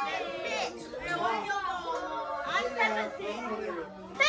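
Indistinct chatter of several people talking over one another in a room.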